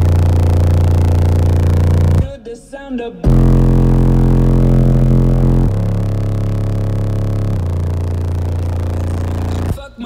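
Three walled-in Resilient Sounds Platinum 18-inch subwoofers playing bass-heavy music loudly in a small car. Long held deep bass notes step to a new pitch every couple of seconds, with a break of about a second early on, heard from inside the car.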